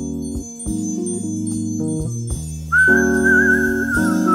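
Jazz played on a Fender electric piano: bell-like sustained chords over a bass line. About three quarters of the way in, a louder high held melody note with a wavering vibrato comes in over the chords.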